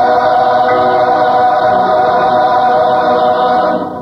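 Church choir singing a long held chord that breaks off just before the end.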